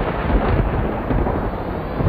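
A loud, steady rumble of thunder, deep and noisy with no separate cracks.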